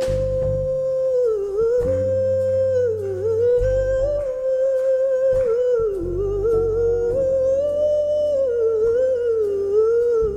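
A woman's wordless sung line in soul-jazz style, held near one pitch with slow bends and turns and no words. Electric bass notes sound beneath it.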